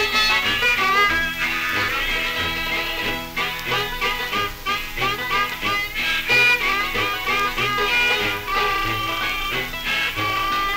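Instrumental break of a 1930s jug band record played from a 78 rpm disc, with no singing. Short sliding melody notes play over a low, bouncing beat.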